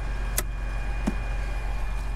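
Tractor engine running steadily: a constant low hum with a faint high whine over it, broken by a sharp click about half a second in and a short dull thump about a second in.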